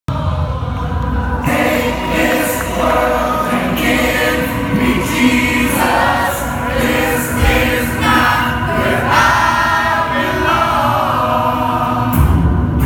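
Live Christian rock band playing with sung vocals, many voices singing together, picked up loud through a phone microphone in the crowd.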